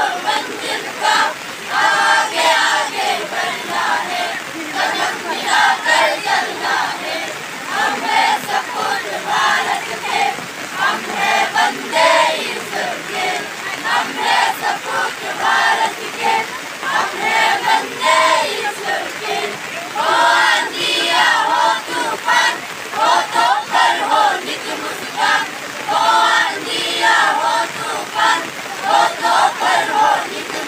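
A group of schoolchildren singing a patriotic song together in chorus.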